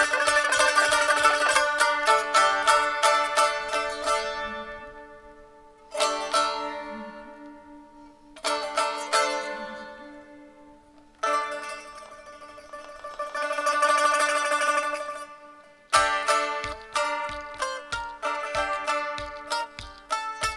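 Solo saz, a Turkish long-necked lute, played unaccompanied over a steady drone note: a fast run of plucked notes, then two single chords left to ring out and die away, a quick tremolo that swells and fades, and brisk rhythmic picking resuming near the end.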